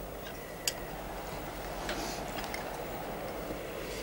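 Steady soundtrack hiss with a few faint, irregular clicks of cutlery against china plates.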